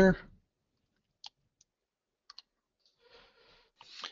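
A few faint computer mouse clicks: a single click a little past one second, a fainter one soon after, and a quick double click a little after two seconds. A soft, faint rustle follows shortly before the end.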